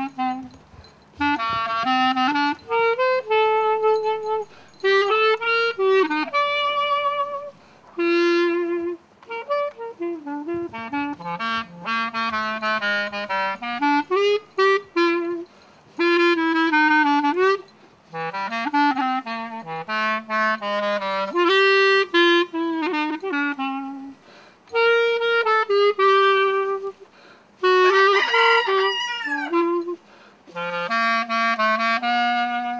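Solo clarinet playing a melody from a medley of standard tunes. The phrases of held and moving notes are broken every few seconds by short breath pauses, with a quick wavering, fluttering run near the end.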